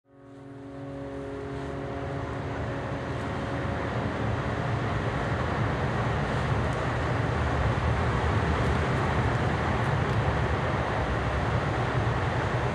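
Steady outdoor urban night ambience fading in from silence: a continuous low rumble with a hiss over it, with a few faint steady hum tones that die away after about four seconds.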